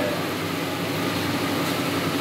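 Hot oil sizzling steadily around a large sha phaley pastry deep-frying in a kadhai, over a low steady hum.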